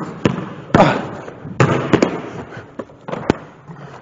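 Basketball dribbled on a hardwood gym floor and passed hard off the wall, then put up for a layup. About eight sharp bangs at uneven spacing, the loudest under a second in, each ringing briefly in the large gym.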